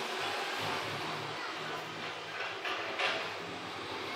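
A passing vehicle: a steady noise that slowly fades, loud enough to stop speech.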